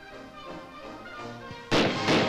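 Soft background music, then a single loud rifle shot near the end.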